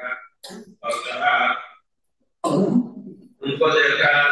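A man speaking into a microphone in short, broken phrases, with what sounds like a throat clearing among them.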